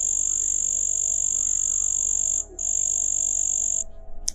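A steady high-pitched night-time chorus of calling creatures, which breaks off briefly about two and a half seconds in and stops just before the end.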